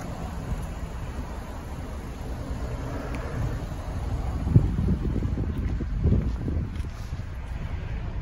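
A Mercedes-Benz C250's engine idling, heard as a low, steady rumble with wind buffeting the microphone; it grows a little louder about halfway through, near the tailpipe.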